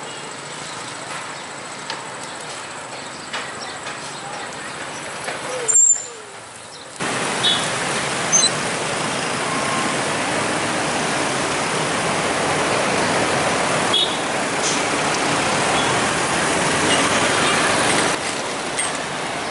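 Traffic noise from motorbikes and cars on a city street, heard from a moving vehicle. The sound dips briefly about six seconds in and comes back louder and steadier.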